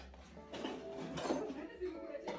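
Indistinct background voices talking, with faint music under them.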